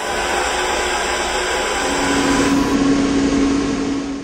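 Small electric motor blowing air with a loud, steady rush; a steady hum joins about halfway through.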